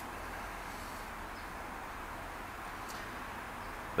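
Steady low background noise with no distinct event: an even hiss that holds at one level throughout.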